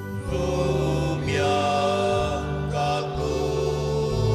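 Sung church hymn with keyboard accompaniment: held notes over a bass line that shifts about once a second.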